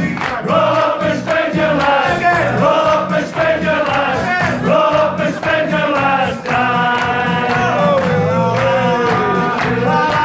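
A man singing into a microphone over recorded backing music, with the room singing along as a group.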